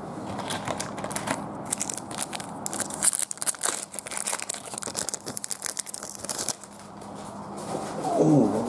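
A trading card pack's wrapper being torn open and crinkled in the hands: a dense run of sharp crackles and rustles that dies down about six and a half seconds in.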